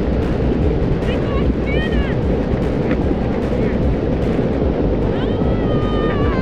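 A rock avalanche pouring down a snowy mountainside: a continuous deep rumble. Faint high voices exclaim over it about a second or two in and again near the end.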